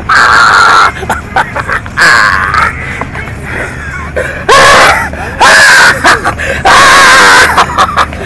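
Loud, strained screams and yells from fighters grappling, about five cries each under a second long, some rising in pitch, over background music.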